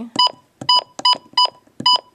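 Midland WR-100 weather radio's key-press beeps: five short electronic beeps, about two a second, as its arrow keys are pressed to change the clock time.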